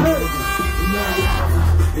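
Live rap song over a loud sound system: an electronic beat with steady high synth tones, then a deep sustained bass note coming in about a second in, with the rapper's vocals on top.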